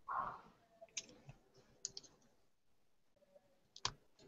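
Faint, scattered clicks at a computer, about four of them with the loudest just before the end, after a brief soft noise at the start.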